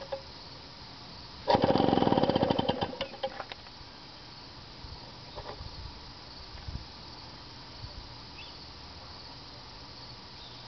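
Power Products model 1000 two-stroke gasoline engine catching briefly about a second and a half in, a fast even run of firing pulses for just over a second, then sputtering out within a few seconds. A few faint knocks follow.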